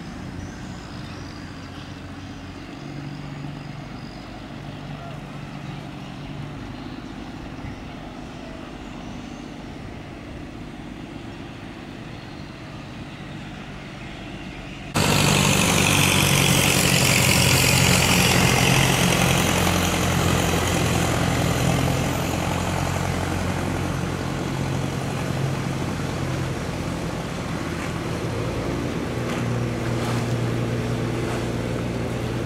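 Boat engines running steadily on a canal. About halfway through, a small wooden motorboat passes close by and the sound turns suddenly much louder: its engine running hard, with the rush of its wake and spray, slowly easing off.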